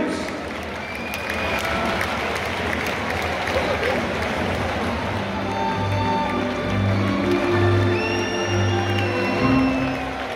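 Football stadium crowd cheering and clapping for a home goal. About halfway through, a goal song over the stadium PA comes in on top of the crowd.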